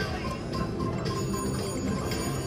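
Electronic chimes and ringing jingles from casino gaming machines, a steady mix of bell-like tones at several pitches.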